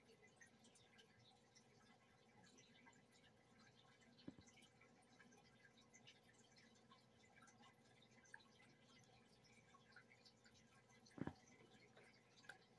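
Near silence: room tone, with two faint short clicks, one about four seconds in and one near the end.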